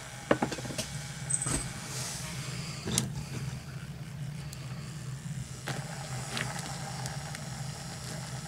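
Small electric motor of a mini makeup-brush washing machine running steadily with a low hum, swirling water around a makeup brush held in its tub. A few light clicks sound over the hum.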